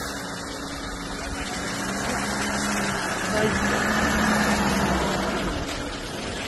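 A vehicle engine running steadily with a low hum, growing louder a few seconds in and easing off near the end.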